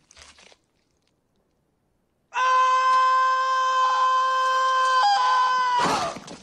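A man's long, high-pitched scream from a film soundtrack, starting about two seconds in and held at one pitch for about three and a half seconds, with a slight break in pitch near its end: a cry of pain as his bare foot comes down on an upturned nail.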